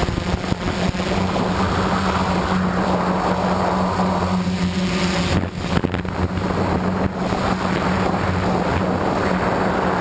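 DJI Flame Wheel F550 hexacopter's brushless motors and propellers in flight, a steady droning hum heard from its onboard camera with wind buffeting the microphone. The hum dips briefly about halfway through, then carries on.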